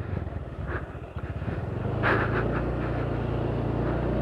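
Motorcycle engine running at low speed on a stony dirt track, its note settling and rising slightly about a second in, then holding steady.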